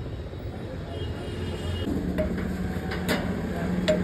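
Steady low rumble of street traffic. A steady low hum joins about halfway through, and a single sharp knock sounds near the end.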